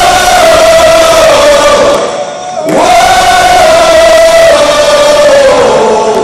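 Male rock vocalist belting two long, high held notes through the PA. Each note slides up into pitch; the first is held about two seconds, and the second starts just before three seconds in and is held until near the end, over a dense wash of hall and crowd noise.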